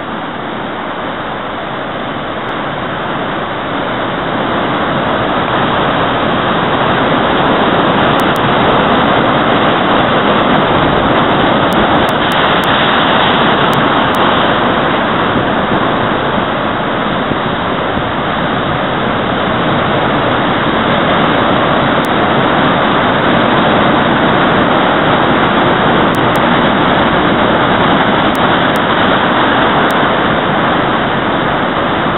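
Heavy ocean surf breaking over volcanic rock: a continuous, dense rush of churning white water that grows louder over the first few seconds and then holds steady.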